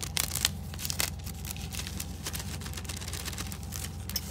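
Paper and plastic packaging crinkling and rustling as a card and tissue paper are handled, with a few sharper crackles in the first second or so, over a steady low hum.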